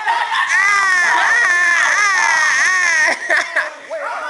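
A teenager's long, high-pitched vocal wail, wavering up and down in pitch for nearly three seconds and then breaking off into short voice sounds.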